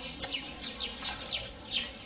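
Small birds chirping, a steady run of short high calls that each fall in pitch, about three or four a second.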